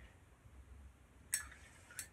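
A quiet pause with a short, sharp click about two-thirds of the way through and another at the very end: a paintbrush tapping against the paint palette.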